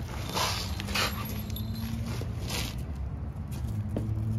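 Hook-and-loop strap being pulled and pressed around a rolled fire hose bundle at its coupling: about three short rasps of the strap material.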